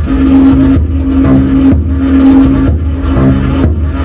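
Live electronic music from a Eurorack modular synthesizer: a loud held synth tone that repeats about once a second with short breaks, over a steady deep bass and a short stepped figure lower down.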